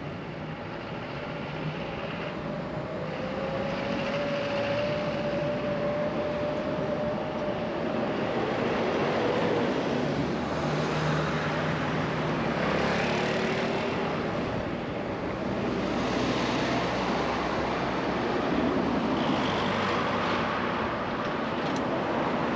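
Road traffic on a multi-lane road: cars and vans passing, a continuous rush of tyres and engines that grows louder over the first few seconds. A thin engine tone rises slightly a few seconds in.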